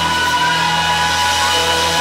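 Live rock band holding a chord that rings out steadily, electric guitar and bass sustaining with no beat under them.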